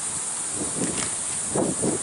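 Steady background hiss, with faint low voice sounds in the second half.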